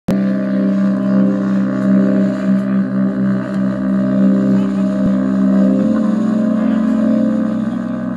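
A live band's sustained, droning instrumental intro at concert volume, recorded on a phone: several low held notes layered together, one of them changing pitch about six seconds in.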